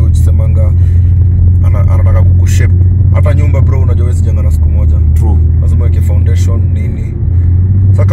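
Steady low engine and road drone inside the cabin of a moving BMW 3-series, with a brief dip near the end, under a man's talking.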